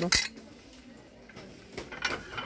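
Small square porcelain plate set down on a stack of identical plates: one sharp clink just after the start, then a faint tap near the end.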